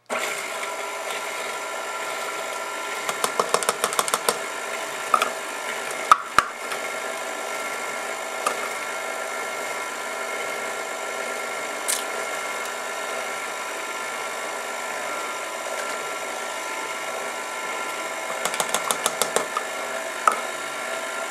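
KitchenAid stand mixer motor running steadily on low speed, its beater turning through a stiff cream cheese batter. Two spells of rapid clicking, a few seconds in and near the end, and a couple of sharp knocks around six seconds.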